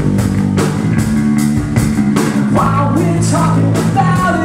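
Live rock trio playing: electric guitar, bass guitar and drum kit with a steady beat, under a male lead vocal whose sung line rises about two and a half seconds in.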